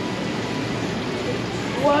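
Steady, even background hiss of an indoor hall, with no distinct events. A voice starts near the end.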